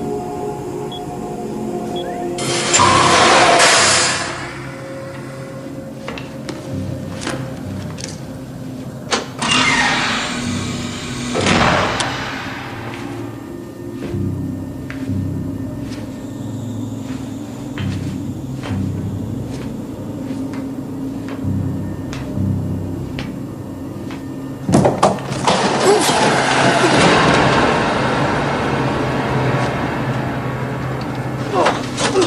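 Science-fiction film soundtrack: a low, pulsing ambient score, cut through by loud hissing whooshes about three seconds in, twice around ten seconds, and again from about twenty-five seconds on.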